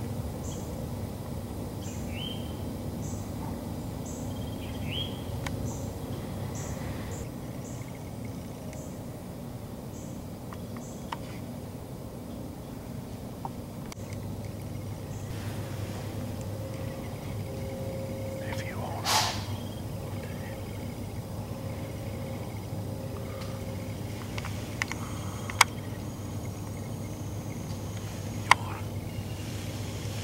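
Quiet woodland sounds: a few short rising bird chirps and a high ticking that repeats about twice a second through the first several seconds, over a steady low hum. A brief rustle comes about two-thirds of the way through, and two sharp clicks come near the end.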